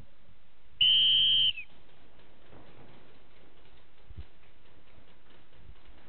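A single whistle blast, steady and high-pitched, lasting under a second and dipping slightly as it ends: the referee's signal to start the paintball round. After it come only faint, scattered knocks.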